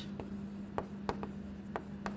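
Chalk writing on a chalkboard: faint strokes broken by about five short taps as the letters are formed.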